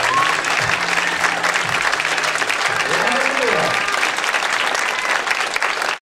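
Audience applauding after a dance routine, with the music's last notes fading out in the first couple of seconds and a voice calling out about three seconds in.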